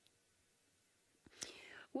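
Near silence, then about a second and a quarter in, half a second of a breathy, whispered vocal sound from a woman's voice.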